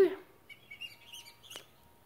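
Small birds chirping faintly outdoors in short, high calls, with a single sharp click about one and a half seconds in.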